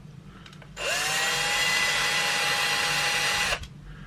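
Ryobi cordless drill spinning a small chamfer bit against the end of a rod, cutting well. The whine rises as the motor spins up about a second in, holds steady for nearly three seconds, then stops shortly before the end.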